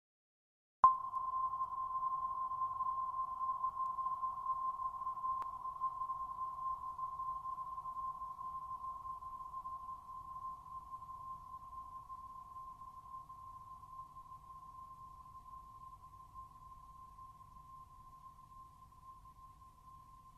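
A meditation bell struck once about a second in: a single clear ringing tone that slowly fades away.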